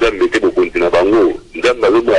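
Continuous speech: a person talking, with no other sound standing out.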